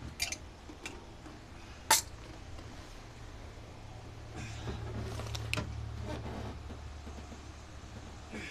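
Gloved hands working a stuck vacuum hose off the carburetor fittings: a few small clicks, a sharp metallic click about two seconds in, then a longer stretch of rubbing and scraping with more clicks, over a steady low hum.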